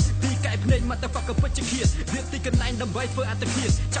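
Hip hop track with a steady deep bass and about five heavy kick drums that drop sharply in pitch, under a rapped vocal.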